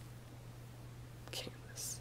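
Quiet pause with a steady low hum. A person makes two brief, soft breathy sounds, near-whispers, the first about two-thirds of the way in and the second near the end.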